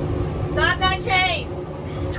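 Boat's outboard motors idling in neutral, a steady low hum, with a man's voice calling out over it about halfway through.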